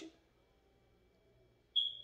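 Near-silent pause with faint room tone, then near the end a single short, steady high-pitched beep.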